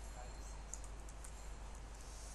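Faint, irregular computer keyboard clicks as text is typed, over a steady low electrical hum.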